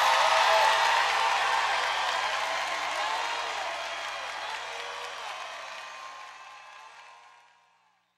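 Live audience applauding and cheering with scattered shouts, fading steadily away until it cuts to silence about seven seconds in.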